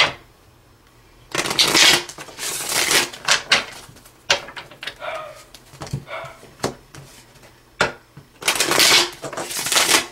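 A tarot deck shuffled by hand: several bursts of cards rustling and riffling, with single sharp card snaps between them, the longest burst near the end.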